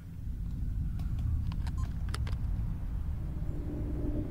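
Deep low rumble from the music video's intro soundtrack, swelling up over the first second and then holding steady, with a few faint clicks. A low steady tone comes in near the end.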